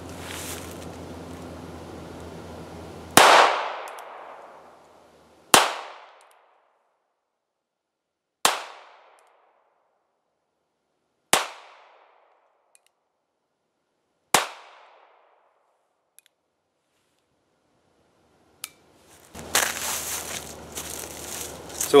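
North American Arms Sidewinder .22 mini revolver fired five times, slow single shots about two to three seconds apart, each a sharp crack with a short echoing tail. The first two shots are the loudest.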